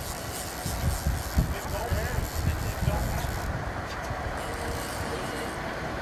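Uneven low rumble of wind buffeting the microphone over a sportfishing boat's engine running at sea, with faint voices in the background.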